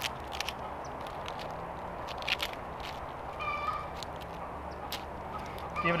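Nylon webbing strap and plastic buckle being handled and cinched tight around a tree trunk: scattered light clicks and rustles. About halfway through a bird gives a short call.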